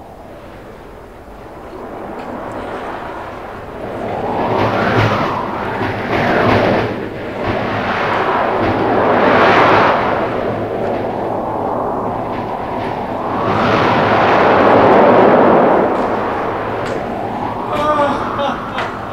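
Stage storm sound effect: rumbling thunder and wind in loud swells that build and die away, peaking about five, nine and fifteen seconds in.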